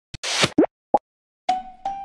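A click and a short burst of noise, then two quick liquid plops. About one and a half seconds in, the first two ringing struck notes of a percussive music cue begin.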